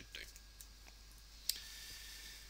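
A single sharp computer-mouse click about one and a half seconds in, over faint steady hiss, just after the end of a spoken word.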